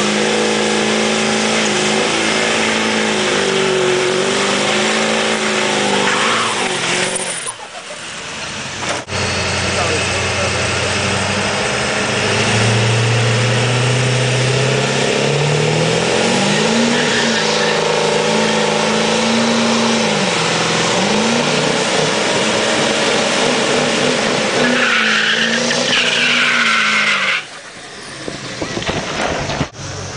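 Diesel pickup trucks doing burnouts: the engine is held at high revs over the hiss and squeal of spinning tyres on pavement. After a break, a second truck, a 1990s Ford F-series, starts its burnout. Its engine pitch climbs, holds for about ten seconds, then cuts off near the end.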